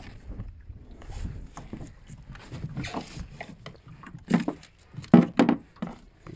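Handling noises in a wooden dinghy: scattered knocks, clicks and rustles as fishing line and a lure are sorted out on the floorboards, with a few sharper knocks about a second before the end.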